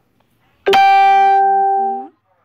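A single loud chime: one pitched note that strikes suddenly about two-thirds of a second in, rings on and fades out over about a second and a half.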